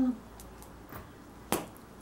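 A single sharp click about one and a half seconds in, with a couple of faint ticks before it, over quiet outdoor background.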